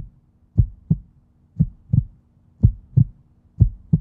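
A break in the background hip-hop beat: low double thumps, like a heartbeat, about once a second, four pairs in all, before the full track comes back in.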